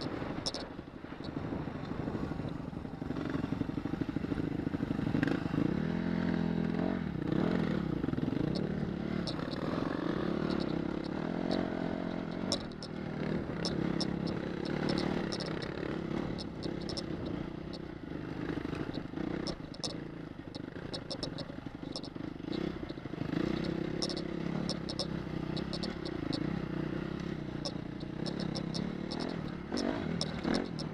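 Off-road motorcycle engine running at varying revs on a rough gravel trail, its pitch rising and falling as the throttle opens and closes, with stones clattering and ticking against the bike.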